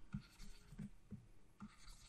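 Faint scratching and light taps of a stylus writing on a tablet.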